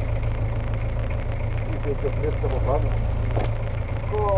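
Boat engine running steadily, a low, even drone.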